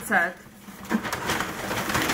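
A woman's short, high-pitched vocal exclamation with falling pitch, then about a second of rustling and handling noise as things are moved about.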